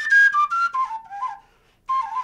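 A solo flute playing a melody of short stepped notes that mostly fall in pitch. It breaks off for a moment near the end and then starts a new note.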